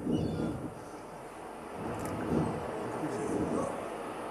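Indistinct, muffled voices in a hall, with a short spoken 'thank you' at the start.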